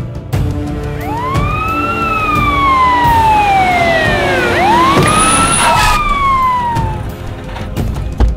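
Police siren wailing in two slow rise-and-fall sweeps, over dramatic film music.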